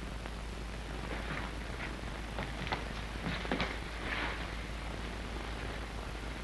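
Steady hiss and low hum of an old 1930s film soundtrack. Over it, a few faint short clicks and soft scuffs come from about a second in to just past four seconds, the sound of two men stepping slowly into a room.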